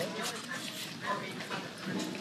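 Faint, short dog vocalisations in the background, a few brief high sounds spread through the pause.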